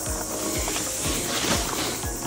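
Footsteps on a gravel track, about three steps a second, over a steady high hiss.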